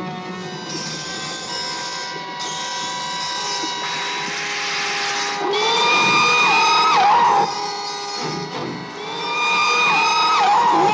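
Film score with long held tones. About five and a half seconds in, a loud wavering, gliding cry rises over it for about two seconds as the killer whale lunges out of the water.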